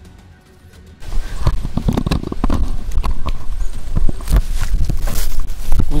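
Faint for the first second, then suddenly loud: irregular crunches and knocks of footsteps through dry leaf litter and scrub, with the rough handling noise of a jostled handheld camera and low rumble on the microphone.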